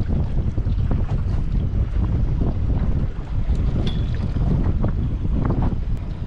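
Wind buffeting the microphone, a steady low rumble, with faint scattered ticks and knocks.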